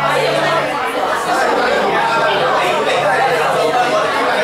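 Crowd chatter: many people talking at once in a steady din of overlapping conversation, with no single voice standing out.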